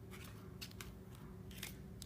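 A few faint, light clicks and scrapes from hands with long acrylic nails handling tarot cards on a tabletop, over a low steady room hum.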